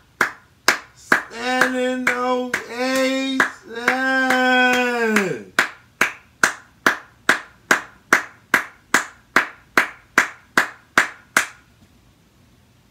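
Hands clapping in a slow, steady rhythm of about two to three claps a second, a one-person standing ovation. Through the first half a man's voice sings three long held notes over the claps; the last note drops in pitch as it ends.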